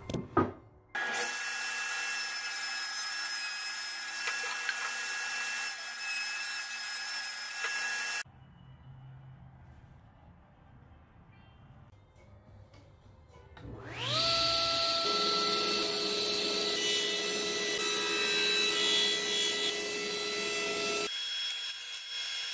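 Power saws running in a wood shop: a saw runs loud and steady from about a second in and cuts off suddenly. After a quieter stretch, a table saw motor spins up with a rising whine and runs steadily while a pine leg blank is taper-cut.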